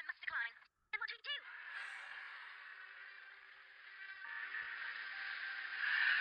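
Cartoon soundtrack played back: a short line of dialogue, then a music cue that swells steadily louder.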